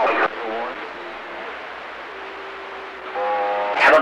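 CB radio loudspeaker on receive between transmissions: steady static hiss on the channel, with a faint voice at the start. A steady tone sounds for about a second in the middle, and another station's voice breaks in with a buzzy held sound near the end.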